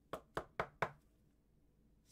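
Four quick hard-plastic clicks in under a second from a magnetic one-touch card holder being closed and seated around a trading card.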